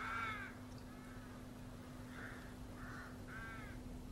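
Crows cawing, about five caws spread across a few seconds, the first the loudest. A faint steady low hum runs underneath.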